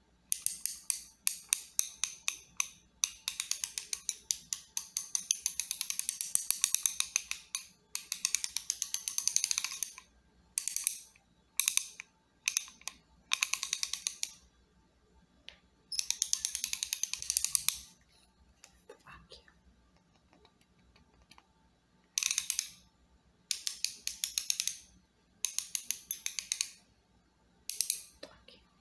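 Socket ratchet wrench clicking in rapid runs as it is worked back and forth close to the microphone. There are about ten bursts of quick, even clicks, each from half a second to several seconds long, with short pauses between.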